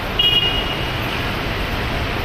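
Steady rushing background noise, with a short high ringing tone about a quarter of a second in that fades within a second.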